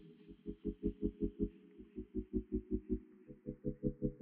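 Background music, muffled as if filtered, with a bass beat pulsing about six times a second in short phrases broken by brief pauses.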